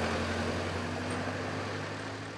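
Road vehicles driving past: a steady engine hum over tyre and road noise that slowly fades.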